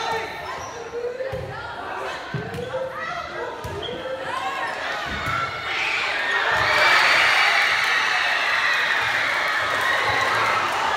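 Volleyball rally in a school gymnasium: several dull thumps of the ball and players on the hardwood floor over a murmur of student voices, then about six seconds in the crowd breaks into loud cheering and shouting that carries on.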